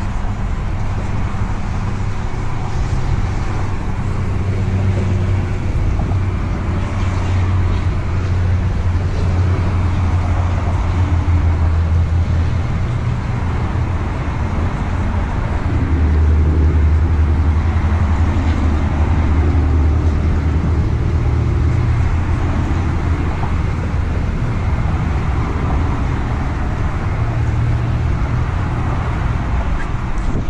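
Steady low rumble of motor traffic, its drone deepening and growing louder about halfway through.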